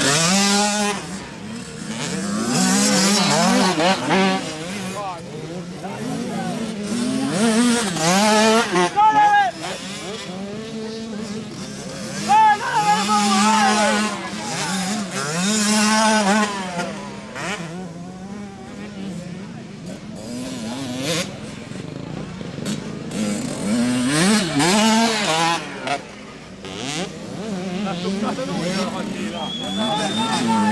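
Several 65 cc two-stroke motocross bikes racing, their engines revving up and dropping back over and over in rising and falling whines.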